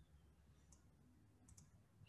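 Near silence: room tone with a few faint, short computer-mouse clicks, about three-quarters of a second and a second and a half in.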